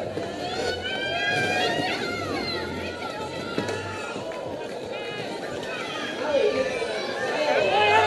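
Many overlapping voices of a roller derby crowd and skaters calling out, over the continuous rumble of roller skate wheels on a wooden rink floor.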